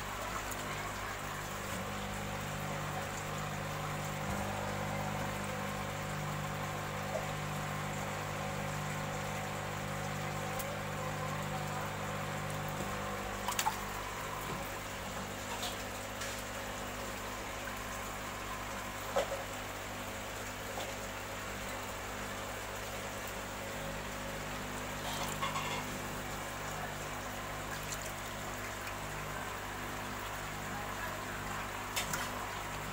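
Water sloshing and splashing as a hand moves through a shallow tub of fish, over the bubbling of aeration and a steady low hum, with a few sharper splashes along the way.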